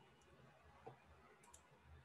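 Near silence: quiet room tone with a few faint clicks, the loudest about midway through and two close together shortly after.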